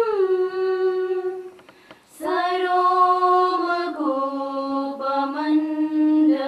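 Women singing a slow prayer in unison, holding long notes that step down in pitch. A short breath pause comes about two seconds in before the singing resumes.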